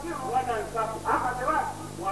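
A person's voice in a rising and falling sing-song delivery, over a steady low electrical hum.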